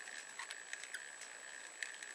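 Faint background hiss with a thin steady high whine and a few light, scattered ticks.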